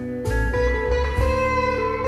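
A recorded song played back over Focal Grand Utopia EM EVO floor-standing loudspeakers and picked up by a recorder in the room: an instrumental passage with held guitar notes over deep bass notes, no vocals.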